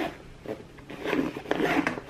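Zipper on a fabric portable lunchbox oven being pulled closed, louder from about a second in.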